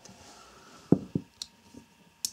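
A CRKT Persian frame-lock folding knife being handled and closed: two sharp clicks about a second in, then a few lighter clicks.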